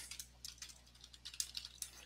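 Faint typing on a computer keyboard: an irregular run of light key clicks starting about half a second in.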